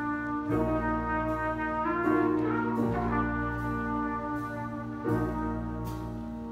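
Student jazz big band playing a slow ballad: brass and saxophone section chords held for a second or two at a time over a low bass line.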